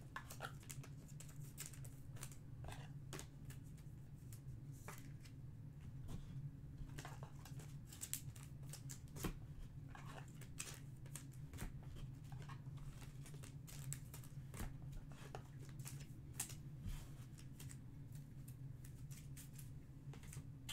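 Faint crinkling and scattered clicks from trading cards, plastic sleeves and foil pack wrappers being handled, over a low steady hum.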